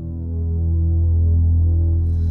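Low sustained musical drone swelling in from silence and holding steady, with quieter held notes above it: the opening of a background music track.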